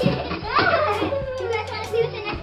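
Children's voices over background music.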